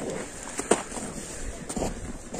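Footsteps in trampled snow: a few short crunches, the clearest about two-thirds of a second in, over a low steady outdoor background.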